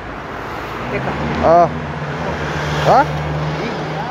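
A motor vehicle driving past on the street: a steady engine hum and tyre noise that grow louder over the first three seconds.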